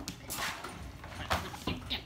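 A few sharp knocks and scuffles as a fluffy puppy is pushed into a wire dog crate on a tile floor, with a short spoken 'No' near the end.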